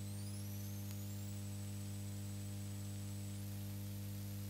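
Steady electrical mains hum over a low hiss, with no race or crowd sound. A faint high-pitched whine glides upward in the first second, holds steady, then jumps a little higher near the end.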